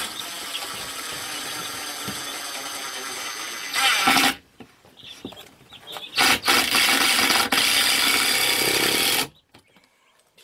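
Cordless drill driving screws into 2x4 lumber in two runs: a long steady run that gets loud just before it stops about four seconds in, then a second loud run from about six to nine seconds.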